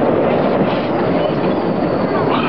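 Miniature ride-on train running along its track: a steady rumbling noise from the moving train.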